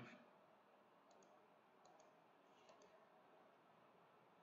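Near silence broken by three faint pairs of small clicks a little under a second apart: a computer mouse being clicked.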